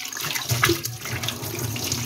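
Tap water running into a stainless steel kitchen sink as a soapy plate is rinsed under the stream, with a few light knocks.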